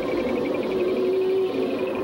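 Synthesized cartoon soundtrack: sustained low notes held steady under a fast, even warbling high tone, with no speech.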